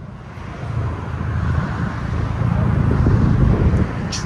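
Straight-piped exhaust of a 2021 Ford F-150's twin-turbo 3.5L EcoBoost V6, with an X-pipe and the mufflers and resonators deleted, rumbling deeply at low speed as the truck is backed out. It grows steadily louder over the first three seconds or so.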